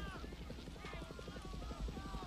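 War-film battle ambience: distant gunfire as a rapid, irregular low crackle, with faint far-off voices over it.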